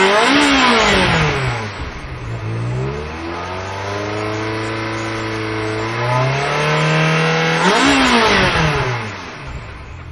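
Ferrari V8 engine revving. The pitch drops away at the start, climbs steadily through the middle and peaks sharply about eight seconds in before falling off. It is loudest at the opening and at that peak.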